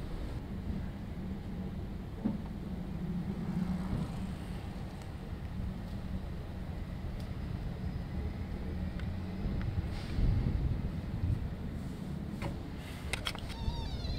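Low, steady rumble of road traffic with an engine hum, swelling briefly about ten seconds in.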